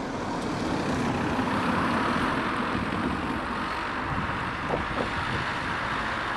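A vehicle's steady running noise, building over the first second or two and then holding.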